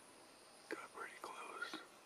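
A person whispering a few words, starting under a second in, over a faint steady high hiss.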